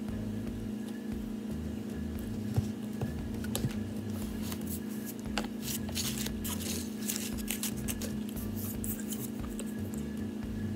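A person chewing a mouthful of soft yeast dinner roll with the mouth closed: small wet clicks and squishes, thickest in the middle of the stretch. A steady low hum runs underneath.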